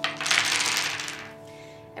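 Wooden chess pieces clattering across a wooden desktop as they are swept off the board, a dense rattle that fades out after about a second.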